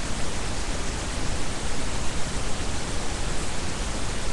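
Steady, even hiss of a webcam microphone's background noise, with no other sound in it.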